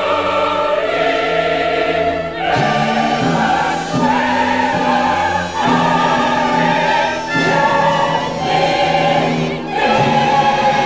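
Mixed chorus singing with orchestra in a classical style. The voices hold long chords that change every second or two.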